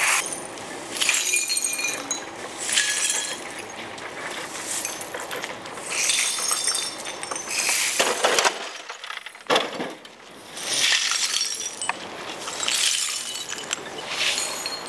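Glass beer bottles clinking and breaking in a run of clattering bursts every second or two, as spilled plastic beer crates and broken bottles are gathered up off the road.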